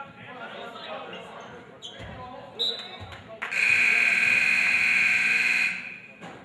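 Gymnasium scoreboard horn sounding one steady blast of about two and a half seconds, starting a little past halfway through, at a stoppage in play. Before it come crowd chatter and a couple of basketball bounces on the hardwood floor.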